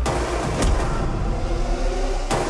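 Dramatic film background score: a heavy low rumble of bass and drums with sharp percussion hits, one at the start and another about half a second in, over a sustained pitched layer.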